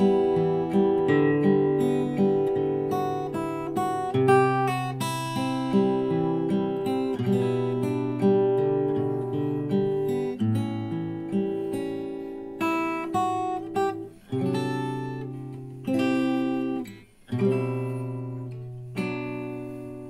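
Solo acoustic guitar played fingerstyle: chords picked out as ringing arpeggios, with a couple of brief breaks in the second half.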